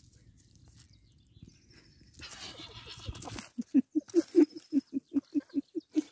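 A man laughing in a fast, even run of short 'ha' pulses, about five a second, starting a little past halfway, after about a second of noisy rustling.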